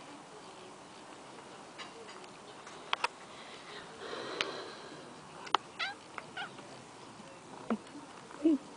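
Persian cat giving a few short meows in the second half, the last one falling in pitch near the end, among a few sharp clicks, the loudest a pair about three seconds in.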